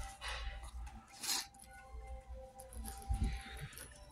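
Pen scratching on paper as words are handwritten, in a few short strokes, over faint background music.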